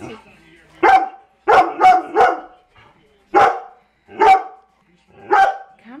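A dog barking seven times at a snowman decoration: one bark, then three in quick succession, then three more spaced about a second apart.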